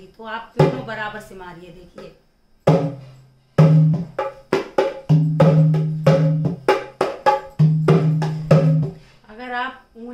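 Dholak played by hand in a bhangra-style rhythm: a quick run of sharp strokes over deep ringing bass strokes, starting about three seconds in and stopping about a second before the end.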